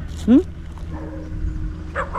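A man's short, rising questioning "hmm?", heard over a steady low hum and rumble.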